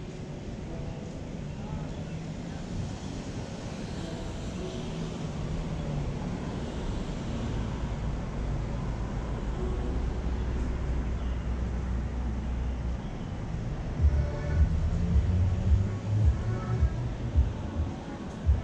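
Street traffic: a vehicle's low rumble swells over several seconds and fades away. In the last few seconds, indistinct voices and bumps close by are the loudest sounds.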